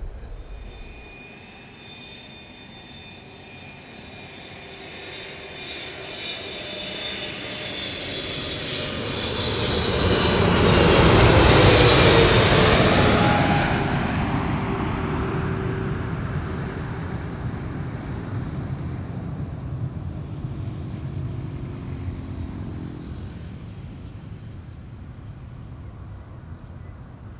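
Boeing 777-300ER's twin GE90 jet engines on final approach. The sound grows louder as the plane nears and peaks about halfway through as it passes close by, its engine whine falling in pitch. A lower rumble then fades as it goes on to touch down.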